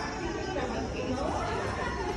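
Low background chatter of voices, with no strong single sound standing out.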